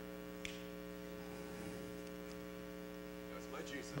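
Steady low electrical hum, the mains hum of the sound system heard in a pause in the sermon, with a faint click about half a second in.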